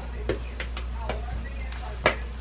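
Soft, scattered ticks and crackles from a frying pan of stir-fried noodles as dark sauce is squeezed onto them from a bottle, over a low steady hum.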